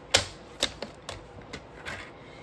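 Stampin' Up! paper trimmer working as a cardstock strip is cut: the plastic blade carriage clicks sharply once just after the start, then about five lighter clicks and taps follow as it slides along the rail.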